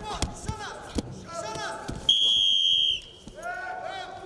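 Referee's whistle blown once, a steady shrill blast of about a second, stopping the action. Before it come a few thuds of the wrestlers hitting the mat, amid shouts from coaches and the crowd.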